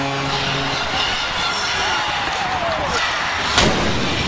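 Arena crowd cheering, with a steady low tone that cuts off under a second in. Near the end the Blue Jackets' goal cannon, a replica field cannon loaded with a blank charge, fires one loud blast.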